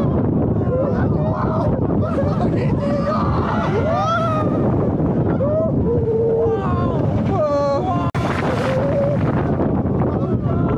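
Roller coaster ride: strong wind rushing over the microphone, with riders screaming and whooping over it. The sound drops out for an instant about eight seconds in.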